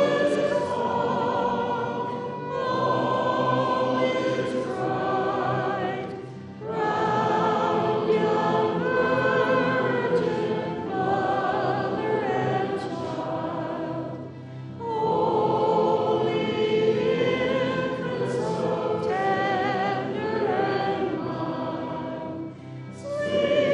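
Choir singing a sacred song in long held phrases, with brief breaks between phrases.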